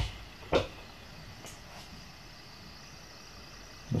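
Quiet indoor room tone in a pause between speech, with one brief sharp click-like sound about half a second in and a fainter one about a second later.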